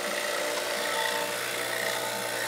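Refrigeration vacuum pump running with a steady hum, evacuating the newly installed condenser; the system is already down in the 600s of microns, a good sign.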